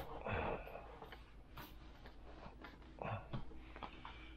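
Faint handling noises: a few light knocks and rustles from hands gripping a foam model jet, over a steady low hum.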